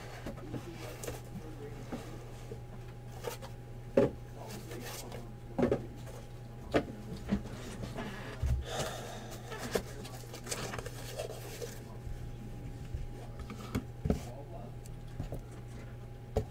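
Scattered light knocks and handling noises of cardboard boxes and card packaging being moved and packed on a desk, over a steady electrical hum.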